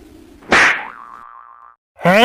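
Cartoon sound effect of an arrow striking a tree trunk and bouncing off: a sudden hit about half a second in, then a ringing boing that dies away about a second later.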